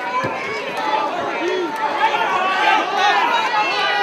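Fight crowd shouting and yelling, many voices overlapping, getting louder from about halfway through.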